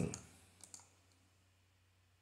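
Two faint computer mouse clicks, about two-thirds of a second in, that advance the page in a PDF viewer, over a low steady hum.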